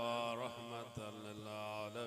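A man's voice chanting an Arabic devotional recitation in long held notes: one note breaks off about half a second in and the next is held on.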